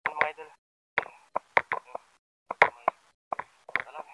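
Sea water splashing and plopping against a camera at the waterline: about a dozen short, sharp splashes in clusters with brief gaps between.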